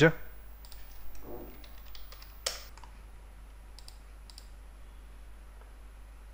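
A few scattered computer keyboard and mouse clicks, the sharpest about two and a half seconds in, over a faint steady hum.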